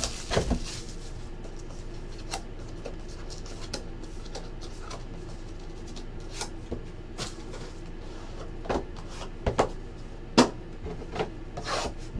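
Clear plastic shrink wrap crinkling as it is stripped off a cardboard trading card box, then the box being opened and handled with a rustle and a few sharp knocks, the loudest about ten seconds in.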